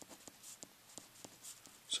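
Pencil writing on paper: faint, short scratching strokes as numbers and symbols are written out.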